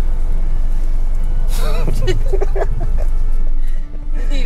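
Steady low rumble of a Renault Triber's cabin on the move, road and engine noise. About a second and a half in, a voice sings briefly with a wavering pitch for about a second.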